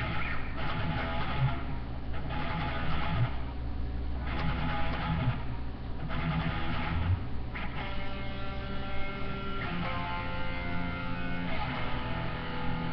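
Electric guitar being played: chords strummed in short bursts for the first seven seconds or so, then notes left ringing through the last few seconds.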